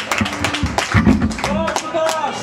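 Heavy metal band's amplified electric guitar notes held and picked between songs, with scattered sharp drum and cymbal hits.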